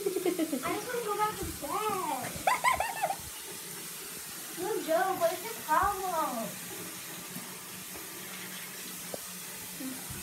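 Bathroom tap running into a sink while someone washes her face at it, a steady hiss of water. Two bursts of voice without clear words rise over it, one in the first three seconds and one around the middle.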